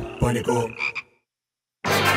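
A burst of jingle sound effects with croaking, gliding noises and a click that cuts off abruptly about a second in, followed by dead silence, then music with voices coming back in just before the end.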